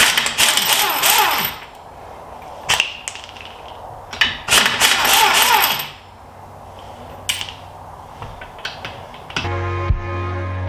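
Impact wrench run in two bursts of about a second and a half each, spinning the lug nuts off a car wheel, with a few sharp clicks in between and after.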